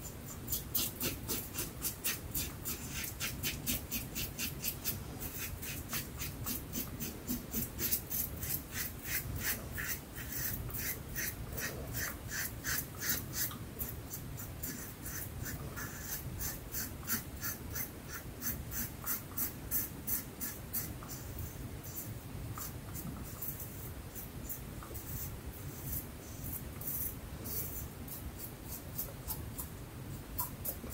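Double-edge safety razor (Dublin Shaving Co. razor with a Treet platinum blade) cutting lathered stubble on the upper lip and chin: a rapid run of short, crisp scraping strokes, several a second.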